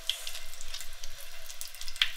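Tap water running into a sink basin and splashing over hands being rubbed together during handwashing: a steady hiss with small irregular splashes.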